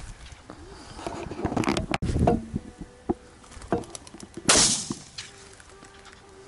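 Rustling and knocks of a shotgun being handled close to the microphone, with a faint insect-like buzz. A loud sharp burst of noise stands out about four and a half seconds in.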